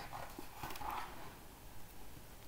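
Quiet handling of a hardback picture book as its page is turned: a couple of light clicks near the start, then a faint rustle of paper around a second in.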